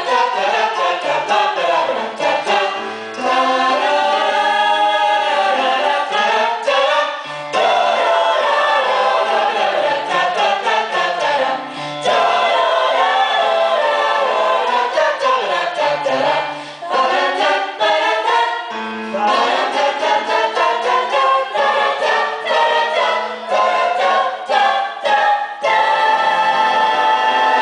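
Mixed-voice jazz choir singing close harmony into handheld microphones, in phrases broken by short pauses every few seconds.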